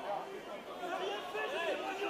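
Several people talking at once in the background, their voices overlapping without clear words.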